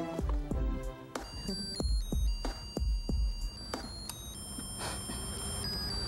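Hallmark Jingle Bear plush toy's electronic sound chip playing a thin, beeping melody of high steady notes, starting about a second in, over a low beat.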